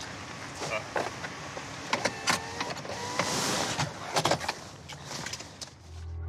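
Car interior sounds: a run of irregular clicks and knocks over a low, steady engine hum, with a brief rushing hiss about three seconds in.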